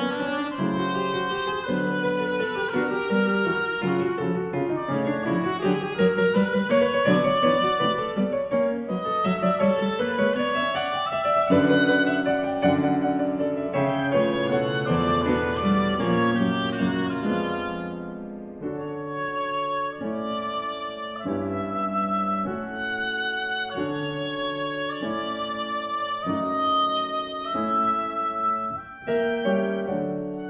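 Oboe and grand piano playing a classical sonata movement. A dense, busy passage gives way about two-thirds of the way through to sparser, more detached notes.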